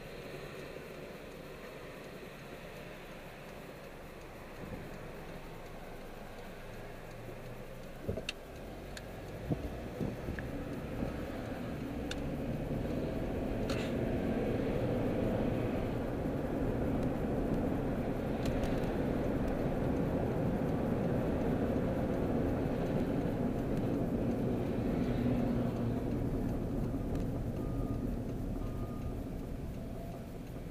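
Car interior noise while driving: engine and road rumble, quieter at first and growing louder about a third of the way in as the car picks up speed, then holding steady. A few sharp clicks or knocks come in the first half.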